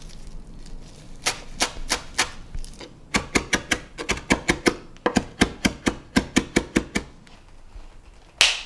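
Chef's knife chopping Italian parsley on a wooden cutting board: a few slow knocks, then quick, even runs of about six knocks a second with a short break in the middle.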